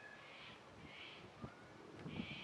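Faint, harsh bird calls: several short calls in a row. There is one soft thump about a second and a half in.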